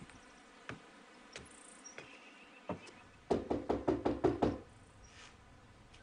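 A few light single steps, then a quick run of about eight knocks on the front door, lasting just over a second, about three seconds in.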